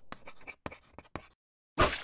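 Pencil scratching across paper in several quick, short strokes, then a brief pause and a sudden louder burst of noise near the end.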